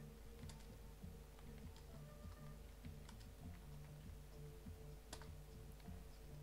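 Faint computer keyboard typing: scattered key clicks as a terminal command is typed and entered, over a steady low electrical hum.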